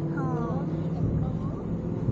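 A steady low motor hum, with a person's voice briefly in the first half second.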